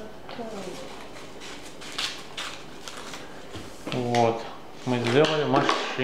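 Black construction paper being handled: soft rustles and light clicks, with one sharper click about two seconds in. A person's voice takes over for the last two seconds.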